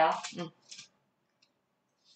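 A short spoken word, followed by a faint brief click, then near silence.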